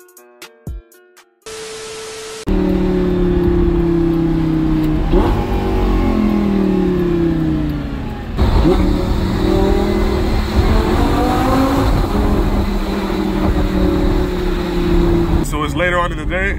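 Lamborghini Gallardo's V10 engine heard from inside the cabin while driving: a steady engine note whose revs fall away a few seconds in, then pick up again after a brief dip about eight seconds in.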